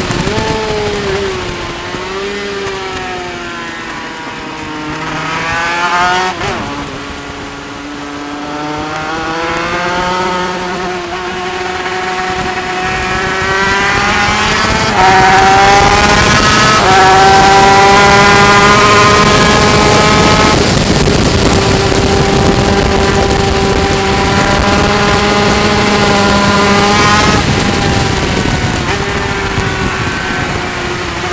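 Yamaha TZ250 two-stroke twin race engine, heard from a camera mounted on the bike. Its pitch falls in the first few seconds as the throttle eases. It then climbs with a couple of brief steps and holds high and steady for about ten seconds before dropping near the end.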